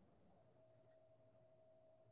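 Near silence: faint room tone with a thin, steady tone held throughout.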